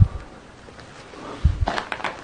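Movement noises: a dull thump at the start, two more low thumps about a second and a half in, then a quick run of short sharp knocks and clicks near the end, like footsteps and camera-handling bumps on a gritty concrete floor.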